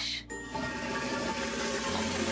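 Toilet flush sound effect for a toy toilet: a steady rush of water starting about a third of a second in.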